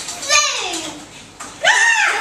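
A young child's high-pitched voice: one long call that slides down in pitch, then a second, higher squeal starting about a second and a half in.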